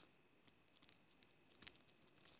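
Near silence, with a few faint ticks of a stylus on a tablet screen as words are handwritten, the clearest near the end.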